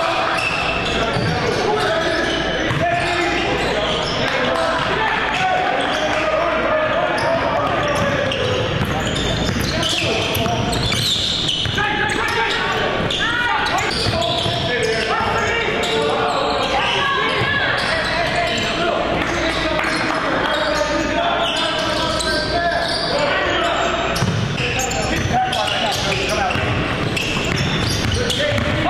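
Live basketball game sound in a gym: a basketball dribbling on the hardwood floor amid indistinct calls and chatter from players, coaches and spectators, echoing in the large hall.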